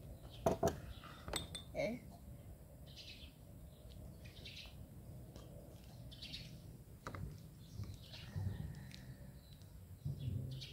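A few light clinks of a metal spoon and small metal bowl against a glass mixing bowl in the first two seconds, then a quiet stretch with short bird chirps here and there over a low hum.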